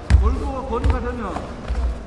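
Taekwondo sparring on a padded mat: the fighters' feet thud as they bounce, with a couple of sharp slaps from kicks or stamps. Voices shout with pitch swinging up and down through the first second or so.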